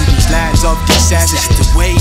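Hip hop track: a deep, sustained bass line and a drum beat, with a voice over it.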